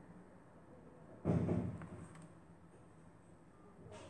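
A single dull thump a little over a second in, dying away within about half a second, against quiet room tone with a faint low hum.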